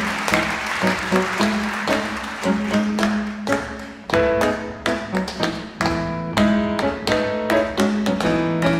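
Live Indo-jazz ensemble music with rapid struck and plucked notes, grand piano and hand percussion among them, over a held low note.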